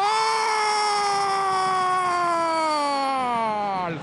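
A football TV commentator's long, drawn-out goal shout: one loud held cry lasting the whole four seconds, its pitch sliding slowly down and then dropping away at the end as his breath runs out.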